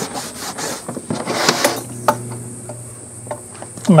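A cloth rubbing gel antique finish into a tooled leather belt on a plywood board, making irregular scratchy rubbing strokes that are strongest about one and a half seconds in.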